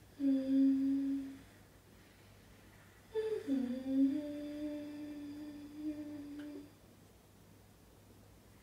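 A woman humming two held notes: a short one, then after a pause a longer one that drops from a higher pitch and holds steady.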